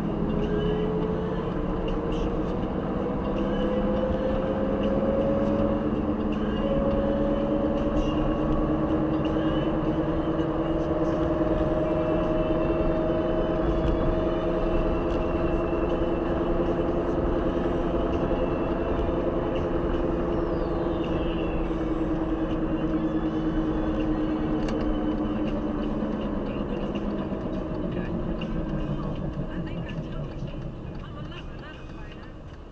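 Car engine and road noise heard from inside the cabin while driving. The drone rises in pitch as the car speeds up, then falls as it slows.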